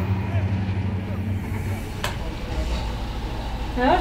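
Diesel locomotives of an iron-ore freight train running past with a steady low engine drone. About two seconds in there is a click, and the drone gives way to a lower, steadier hum.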